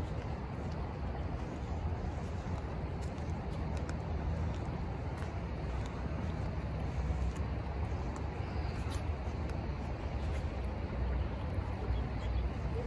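Steady outdoor background noise with a low rumble and an even hiss, and no distinct events.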